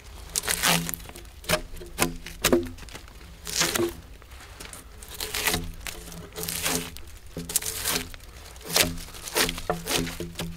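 Hand drawknife pulled in repeated short strokes along a log, scraping and tearing the bark off, about one stroke a second.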